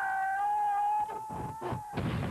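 An animated character's long, high-pitched wail held on one steady note for almost two seconds, with a few dull knocks in its second half.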